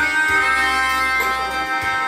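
Yamaha electronic keyboard playing an instrumental passage of live music: held melody notes over a steady bass line, with a short break in the bass just before the end.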